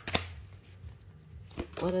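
Tarot cards being handled on a perforated metal table: a sharp tap just after the start and a fainter click near the end.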